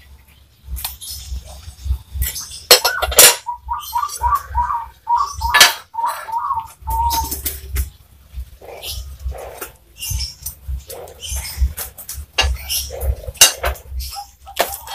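Hard clinks and taps of ceramic tiles being handled and trimmed. Behind them an animal calls: a run of short, repeated notes lasting a few seconds, starting about three seconds in.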